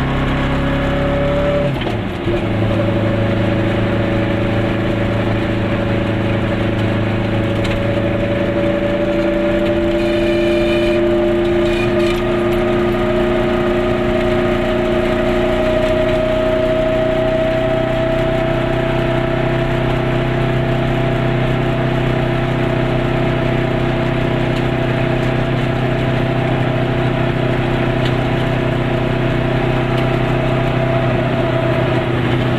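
Goggomobil's air-cooled two-cylinder two-stroke engine pulling the car along, heard from inside the car. Its note drops sharply about two seconds in, then rises slowly and steadily as the car gathers speed.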